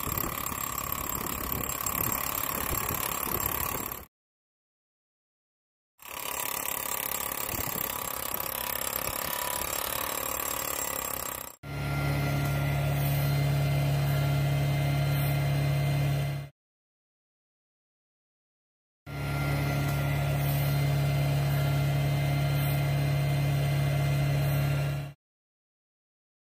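Soil-sampling drill rig's engine running steadily with mechanical noise, heard in four separate stretches cut apart by silent gaps; in the later stretches a strong steady low hum sits under the noise.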